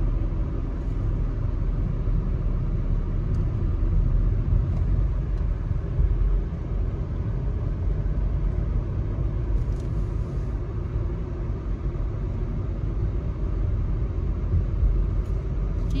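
Steady low rumble of a car's road and engine noise heard from inside the cabin while driving at a constant speed.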